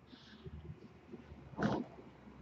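A quiet room with one short breath noise from a person about one and a half seconds in, after a faint hiss of air near the start.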